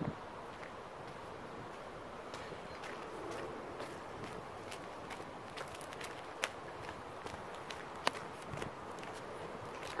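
Footsteps on a gravel road: irregular small crunches and clicks over a steady hiss.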